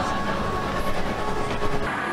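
Steady background noise of a busy shopping mall, a low rumbling hum with a faint held tone over it.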